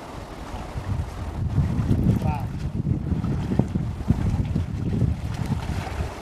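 Wind buffeting the microphone: a loud, uneven low rumble that swells about a second in and eases near the end.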